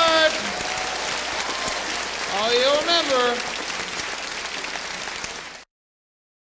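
Audience applauding, with a voice calling out over the clapping about two and a half seconds in. The sound cuts off abruptly just before the end.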